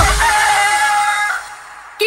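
A rooster crowing once, sampled into the close of an electronic dance track: a long, held call that fades out after about a second and a half.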